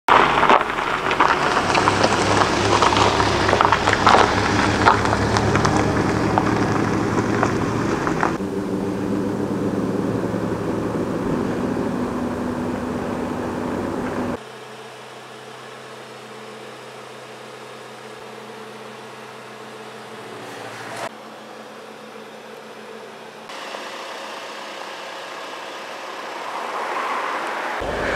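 Seat Leon Cupra 290's turbocharged 2.0-litre four-cylinder engine running as the car drives over gravel, with the tyres crunching on the stones. About halfway through the sound cuts abruptly to a quieter, steady engine hum, with a few more sudden cuts.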